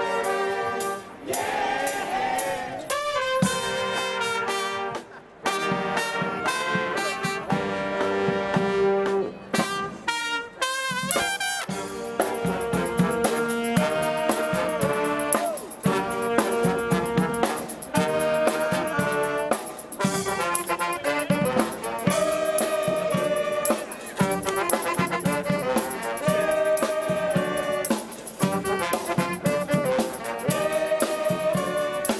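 Street brass band (xaranga) playing: saxophones, trumpet and sousaphone over a bass drum beat. The music stops briefly a few times in the first ten seconds, then runs on without a break.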